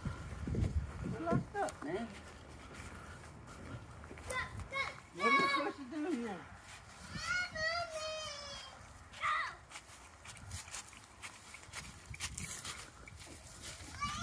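Children's voices at a playground, faint and indistinct, with a few brief high-pitched calls or shouts about five to nine seconds in.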